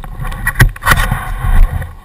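Several sharp knocks against a helmet-mounted GoPro, over a heavy low rumble on its microphone.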